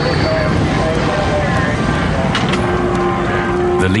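Steady loud rumble of running vehicle engines, with indistinct voices of rescuers mixed into the din.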